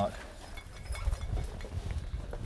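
Outdoor wind rumbling on the microphone, with faint scuffs and knocks of boots and climbing gear against rock as a man squeezes into a narrow rock cleft.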